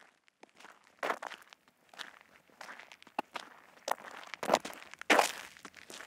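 Footsteps of two people walking on gravelly desert ground, a scuffing step about every half to two-thirds of a second at a steady walking pace.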